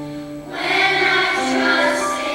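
Girls' choir singing together in held notes, their voices swelling louder about half a second in.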